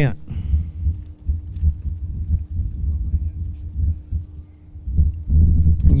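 Wind buffeting an outdoor microphone: an uneven, gusting low rumble, with a faint steady hum beneath it that stops about five seconds in. A man starts speaking near the end.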